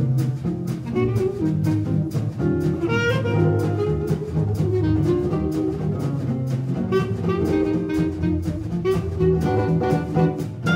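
Gypsy jazz quintet playing a swing tune: clarinet over acoustic guitars strummed in a steady beat, with double bass and drums.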